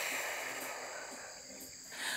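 A soft rush of air that fades away over about two seconds, over a steady chirping of crickets.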